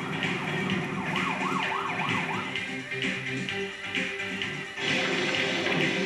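Loud fairground ride music with a siren-like whooping effect, about five quick rising-and-falling sweeps about a second in. The sound gets louder and fuller near the end.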